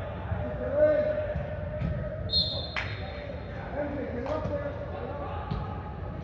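Players shouting to each other across an indoor soccer pitch in a large echoing hall, with a sharp knock of the ball being kicked about three seconds in. A short high-pitched tone sounds just before the kick.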